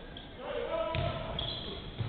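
A basketball bouncing on a hardwood court during play, a run of thuds from about a second in, with voices in the hall.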